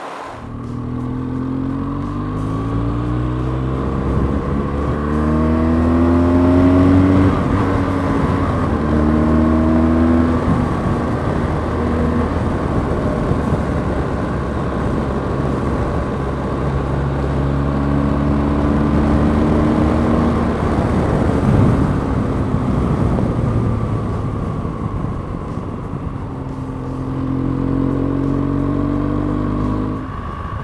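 BMW R1200GS boxer-twin engine accelerating through the gears, its pitch climbing in steps, then holding steady at cruising speed and climbing again near the end. Steady wind rush runs under it throughout.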